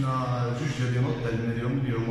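A man's voice speaking at a steady, low pitch with long, drawn-out vowels.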